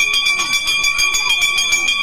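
A bell ringing continuously with a rapid, even rattle at a steady pitch, like an electric alarm bell.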